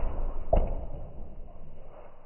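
Two cats scuffling in a fight, with a short sharp noisy burst about half a second in, after which the sounds die down.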